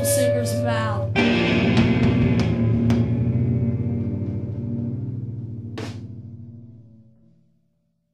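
Noise-rock band playing live: singing over guitar and drums, then about a second in a final crashing chord with cymbals that rings out and fades away to silence. A single sharp click comes near the end of the fade.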